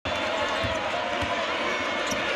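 Basketball dribbled on a hardwood court, a few low bounces about half a second apart, over a steady arena crowd murmur.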